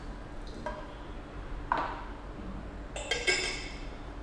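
Glassware knocks and clinks: a few light knocks, a sharper one just before the middle, then a quick cluster of ringing glass clinks about three seconds in, as the glass lid goes back onto the glass teapot.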